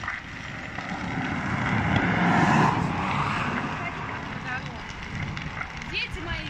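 A vehicle passing close by on the road, its engine and tyre noise swelling to a peak about two and a half seconds in and then fading away.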